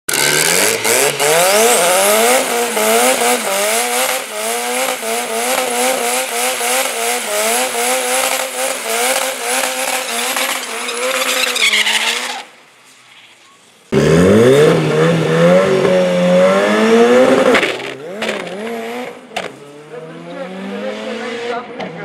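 Nissan pickup drag car doing a burnout: the engine is held at high revs with its pitch wavering up and down while the rear tyres spin. After a short quiet gap it launches, the engine pitch climbing through the gears, and the sound fades as the truck runs away down the strip.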